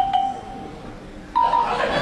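A short bell-like tone sounds right at the start. About one and a half seconds in, a studio audience breaks into loud laughter and clapping, with further short tones over it.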